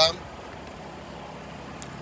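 Steady low hum of outdoor background noise, with no distinct events.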